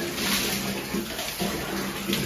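Water poured from a plastic mug over a Labrador's wet coat, splashing down onto the floor and into a plastic bucket.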